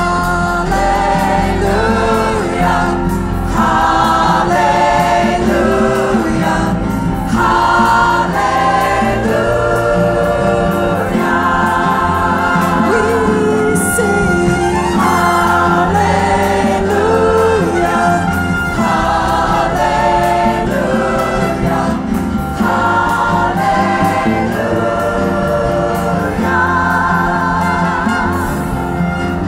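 Gospel worship song: a woman sings lead with a choir behind her over live piano and band accompaniment. The singing comes in phrases over a steady backing.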